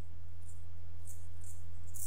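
A steady low hum with a few faint, soft clicks of keys being typed on a computer keyboard.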